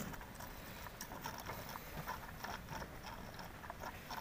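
A goat drinking from a plastic tub: a run of faint, irregular slurps and small clicks.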